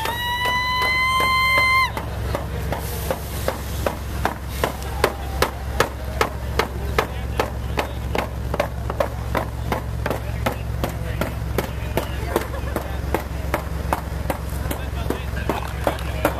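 A diesel locomotive idling with a steady low rumble. Over it, a high held tone sounds for about the first two seconds, followed by a steady beat of sharp knocks about twice a second.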